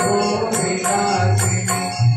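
Devotional Sanskrit hymn sung as a chant with musical accompaniment, with a percussion stroke about twice a second.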